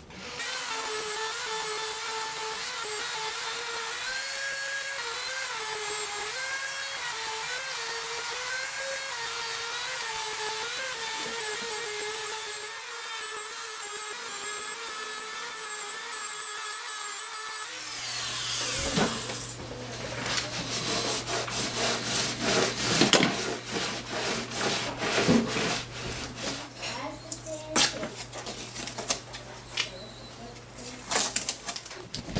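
Dremel-type rotary tool with a small polishing wheel buffing guitar frets, its high motor whine wavering in pitch as it is pressed onto the frets, until it stops about 18 seconds in. After that come irregular clicks, scrapes and rubbing as hands work over the taped frets.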